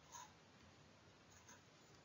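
Near silence, broken by two faint, brief taps of a pen or stylus marking the screen, about a fifth of a second in and again about a second and a half in.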